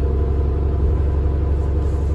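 Steady low rumble of a 2013 New Flyer Xcelsior XD40 transit bus with its Cummins ISL9 diesel engine running, heard from aboard the bus.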